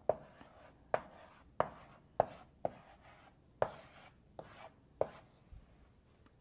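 Chalk writing on a blackboard: about nine sharp taps, each followed by a short scratch, as figures are written and a box is drawn around them.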